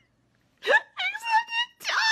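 A woman's high-pitched squealing laughter, starting about half a second in after a moment of silence and coming in several short squeals.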